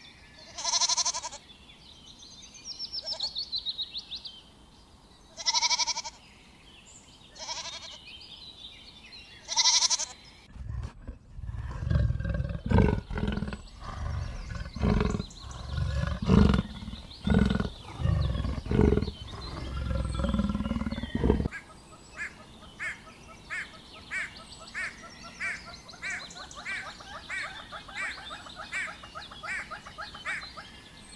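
A goat bleats several times. Then comes a leopard's sawing call, a long run of low rasping pulses and the loudest part. Last is a bird's steady clicking call, about two clicks a second.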